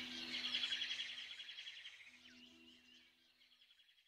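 Soft background music fading out: a few held low notes under rapid, bird-like chirping trills, all dying away together near the end.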